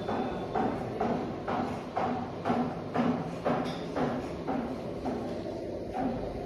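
Footsteps on a hard tiled floor at an even walking pace, about two steps a second.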